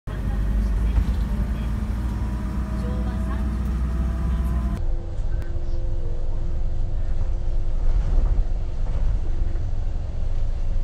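Bus engine and road noise heard from inside the passenger cabin: a steady heavy low rumble with a faint whine, changing abruptly about five seconds in.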